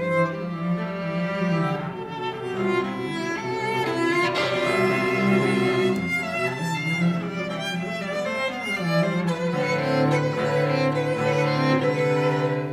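A violin and a cello playing a bowed duet, the cello holding long low notes beneath the violin's higher, wavering line.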